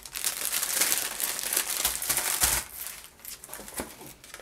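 Clear plastic wrapping crinkling as cellophane-wrapped bundles of diamond-painting drill bags are handled. It is loud for about the first two and a half seconds, then eases to a few lighter rustles and taps.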